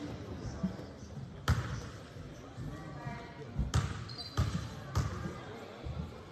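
Basketball bouncing on a hardwood gym floor during a free-throw setup: one bounce about one and a half seconds in, then four dribbles about two-thirds of a second apart in the second half. Each bounce echoes in the large hall over a low murmur of voices.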